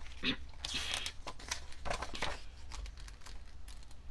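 Paper pages of a picture book being turned by hand: a series of short rustles and crinkles as the page is lifted, swept over and smoothed down.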